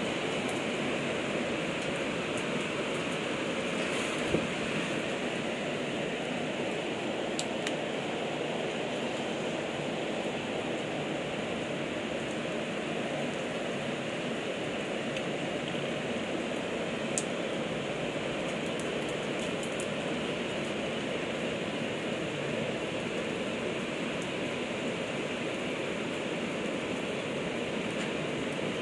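Heavy downpour falling steadily, a dense even hiss, with a few faint ticks.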